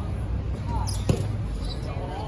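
A dodgeball hitting with one sharp smack about a second in, amid players' short shouts on the court.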